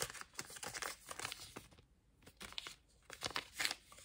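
Paper packaging crinkling and rustling as a small cardboard jewelry box and its card insert are handled: a run of short, scratchy crackles with a brief lull about halfway through.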